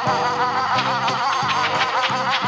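Cartoon music cue: a fast-warbling high tone over a repeating low chord pattern, with light ticks in the second half. The warble is a dizzy effect for a spiral-eyed, dazed character.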